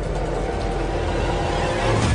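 Low rumbling drone from a horror film trailer's soundtrack, dense and steady with faint held tones above it, growing a little louder near the end.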